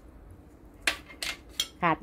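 Kitchenware clinking: three short, sharp clinks a bit under half a second apart, starting about a second in, as small dishes of seasoning are handled over a stainless steel mixing bowl.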